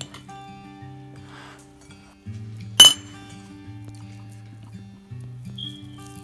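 Background music with a slow, steady melody, and about three seconds in a single sharp, ringing clink against a dinner plate.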